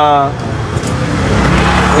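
Motor scooter engines running as the scooters ride along the alley, the engine and road noise growing louder toward the end.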